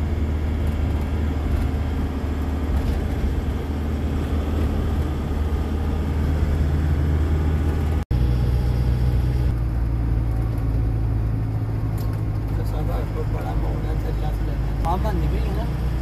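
Heavy truck's engine droning steadily with road noise, heard inside the cab while driving. The sound breaks off for an instant about halfway through, then carries on with a slightly different low note.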